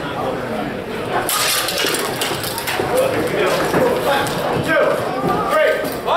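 Unclear voices echoing in a large hall, with a run of sharp clicks and clinks starting about a second in.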